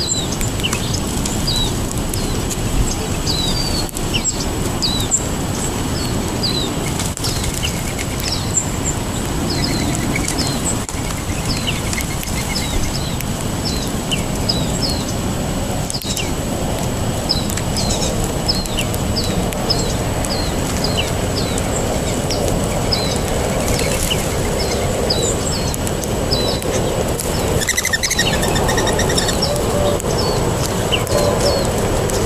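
Small songbirds at a seed feeding spot chirping with short, high notes, about one or two a second, over a steady low rush of background noise.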